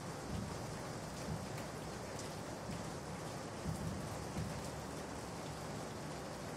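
Steady, faint hiss of room noise, with a few soft low sounds now and then.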